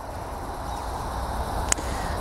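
Outdoor ambience with a steady low wind rumble on the microphone and one short click near the end.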